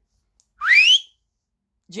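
A man's short whistle, a single note sliding steeply upward for about half a second.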